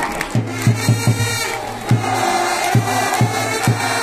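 Japanese baseball cheering section's big drum with trumpets: about ten strikes of the drum at an uneven beat under held trumpet notes, with the crowd chanting along in the second half.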